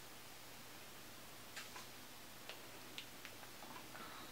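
Near-quiet room hiss with a handful of faint, short clicks in the second half, the small sounds of someone tasting from a squeeze food pouch.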